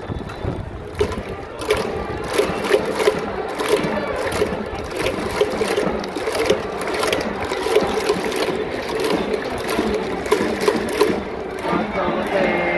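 Baseball crowd in the outfield stands: a steady din of voices under many irregular sharp claps and clacks from fans' hands and noisemakers, about two or three a second.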